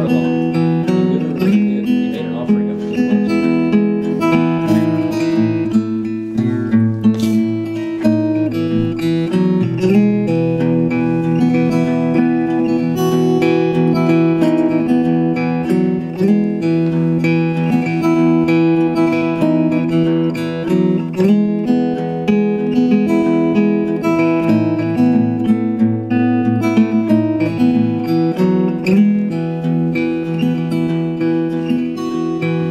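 Handmade acoustic guitar played solo, plucking and strumming chords in a steady, flowing pattern with a moving bass line: the instrumental introduction of a folk song, before the singing begins.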